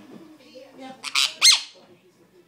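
Sun conure giving two short, harsh squawks about a second in, the second one rising and then falling in pitch.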